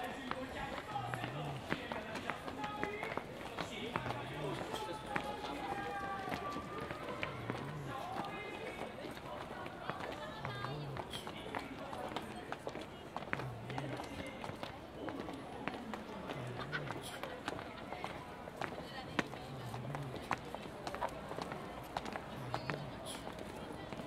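Footsteps of a walking crowd on stone steps and paving, with low thuds about every second and a half and scattered sharp ticks. People's voices chatter in the background.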